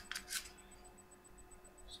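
Two faint, short clicks from handling the airsoft pistol's plastic BB magazine, then quiet room tone with a faint steady hum.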